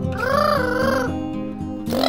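An Amazon parrot gives one wavering call, about a second long, near the start, over background guitar music with steady low notes.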